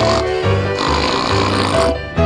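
Live piano and string quartet accompaniment, with a harsh rasping noise lasting about a second and a half in the middle.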